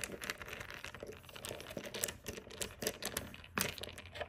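Light, irregular clicks and taps of a metal pulley wheel and its fittings being handled and fitted in a drill-powered pulley.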